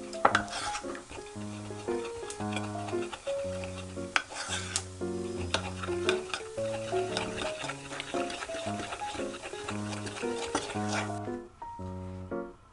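Wooden spoon stirring a thick sauce of mayonnaise, soy sauce and syrup in a small ceramic bowl, with repeated clicks and scrapes against the bowl that stop near the end. Background music plays throughout.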